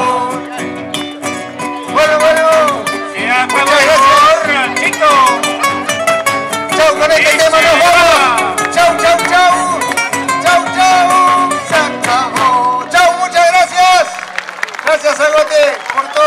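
A live acoustic folk band playing, with acoustic guitars and voices carrying a wavering sung melody. The music thins out and quietens over the last couple of seconds.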